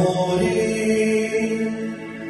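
Devotional music with a voice chanting in long held notes over a steady drone.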